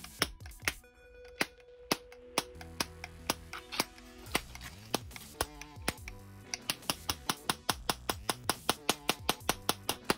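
Handheld Tesla coil throwing sparks onto metal: sharp snapping discharges, at times over a steady pitched tone, the snaps coming faster and more regularly in the last few seconds.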